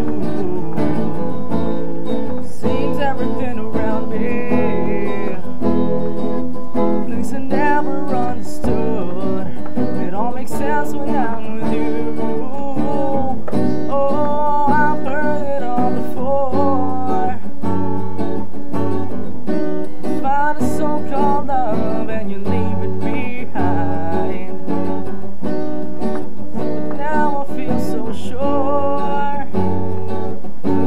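A song cover on acoustic guitar, strummed and picked, with a voice singing over it.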